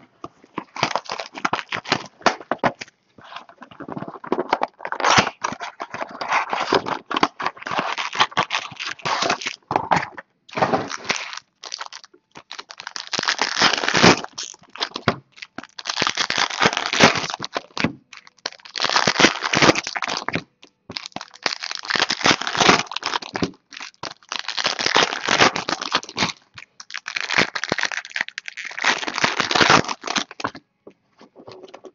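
Foil-lined trading-card pack wrappers being crinkled and torn open, with cards handled and stacked, in irregular bursts of crackling.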